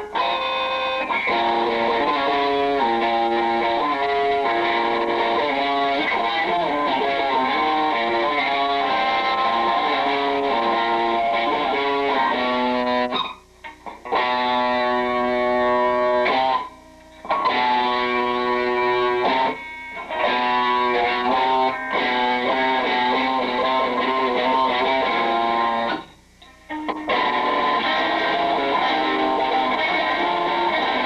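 Stratocaster-style electric guitar played solo through an amplifier: sustained notes and short melodic phrases stepping up and down in pitch, with a few brief breaks in the playing.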